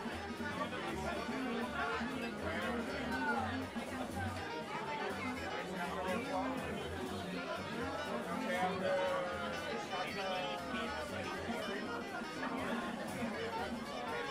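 Many people talking at once in a room, over background music with a repeating bass line.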